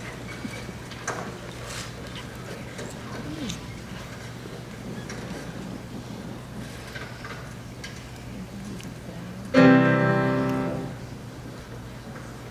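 A single piano note struck near the end, sudden and loud, ringing for about a second as it fades: the starting pitch given to the choir before it sings. Before it, only faint hall noise with a few small clicks.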